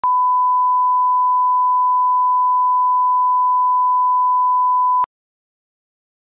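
Steady 1 kHz line-up tone that goes with colour-bar test signals. It is one unbroken pure beep lasting about five seconds, then it cuts off suddenly.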